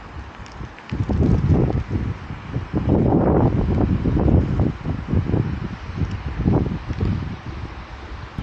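Strong, gusty wind buffeting the microphone in a hail shower, picking up about a second in and rising and falling in irregular gusts.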